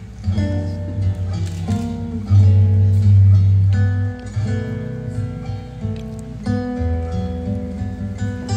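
Instrumental music playing, with plucked-string notes over a low bass line that is loudest from about two to four seconds in.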